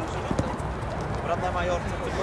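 Footballers' voices calling out across an outdoor pitch, over a steady low rumble, with a few short knocks from feet and ball on artificial turf.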